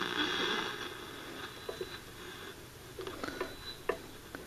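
Zenith A-410-L solid-state table radio hissing with AM static as its dial is tuned off-station between broadcasts; the hiss drops lower after about two seconds, and a few faint clicks come near the end.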